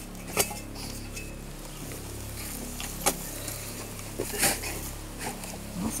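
Metal shovel blade digging into earth in a grave pit: three sharp scrapes or strikes a second or more apart, the loudest about four and a half seconds in, over a steady low background.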